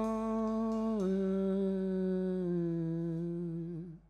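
A man's voice humming one long held note at the end of a song. The note steps down in pitch about a second in, wavers near the end and stops.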